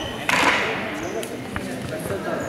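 Background voices echoing in a large sports hall, with one sudden loud, noisy burst about a third of a second in that quickly fades.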